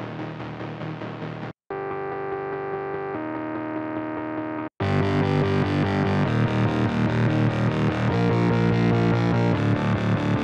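Electronic dance music played back from a DAW: a heavy, distorted synth bassline with sustained chord notes. It cuts out briefly twice, then about five seconds in it comes back louder with a steady drum beat under it.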